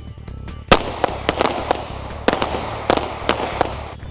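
Several pistols firing on an outdoor range: an uneven string of about ten sharp shots, starting under a second in, over a steady background music bed.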